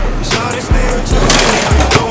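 Hip-hop music with a heavy, regular bass beat, and a brief rush of noise a little past the middle.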